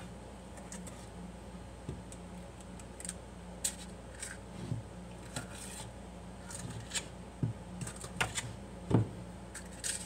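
Metal disher scraping cake batter from a stainless steel mixing bowl, with scattered clicks and scrapes of metal on metal and a louder knock near the end.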